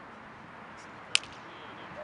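A single sharp smack about a second in, over a steady outdoor background hiss.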